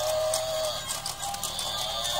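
Battery-operated walking toy animals running: small gear motors whirring with quick irregular clicking and a steady tone.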